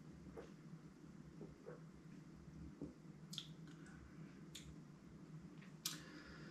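Near silence in a small room, broken by a handful of faint, short mouth clicks and lip smacks as a sip of beer is tasted, with a sharper smack near the end.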